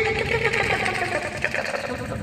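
A man's growling, rasping snarl, a demon's voice, pitched and gritty, fading near the end.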